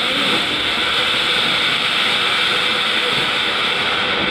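A ground fountain firework (anar) spraying a tall column of sparks, making a steady, even hissing rush.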